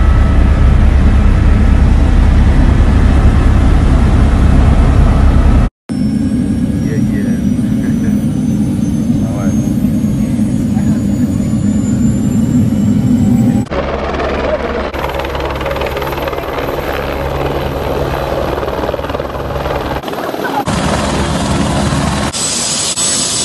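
Helicopter in flight heard from inside the cabin: a loud, steady engine and rotor drone. It is broken by a brief dropout about six seconds in and changes character at cuts around fourteen and twenty-one seconds, the last part heard from outside as the helicopter comes in to land.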